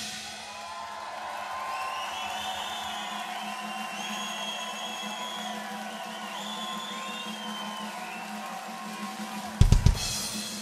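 Live drum kit. A stretch without hits is filled by held, wavering high tones over a steady low hum, then a quick cluster of hard drum and cymbal hits comes near the end.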